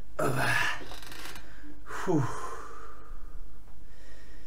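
A man making wordless vocal sounds: a groan about a second long at the start, then a short sound that falls steeply in pitch about two seconds in.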